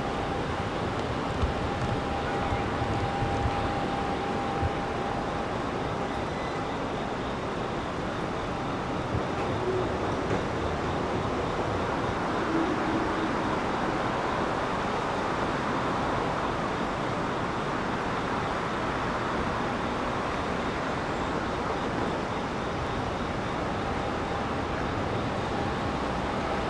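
City street ambience: a steady wash of traffic noise with no distinct events. A faint steady hum runs through the first few seconds and returns near the end.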